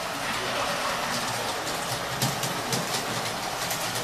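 Large-scale model train running on its track: a steady rattle from the running gear with a string of irregular wheel clicks.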